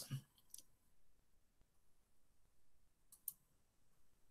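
Near silence broken by a few faint computer mouse clicks, the loudest a quick pair about three seconds in.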